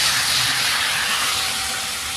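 HO scale model train running past at top speed on Bachmann E-Z Track, the rushing noise of its wheels and motor swelling as it passes close and then fading away.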